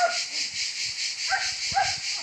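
Cicada chorus: a dense, steady, shrill buzz with a fine pulsing. A few short yelps cut in at the start and twice near the end.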